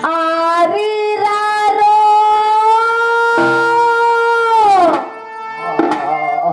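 A female singer's voice through a stage microphone, holding one long high note after a couple of short note changes, then sliding down and stopping about five seconds in.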